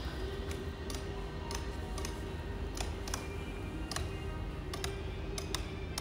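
Adjustable sofa headrest's ratchet hinge clicking notch by notch as the headrest is pulled up by hand, a series of sharp clicks about two a second, with background music underneath.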